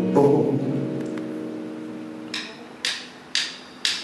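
An electric guitar chord rings out and fades over about two seconds. Then come four evenly spaced sharp clicks, about two a second: a count-in, typical of drumsticks clicked together.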